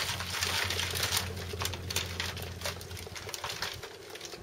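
Hands scooping and crumbling loose compost into a plastic modular seed tray: a dry rustle with many small patters and ticks, growing fainter toward the end. A low steady hum sits underneath and stops just before the end.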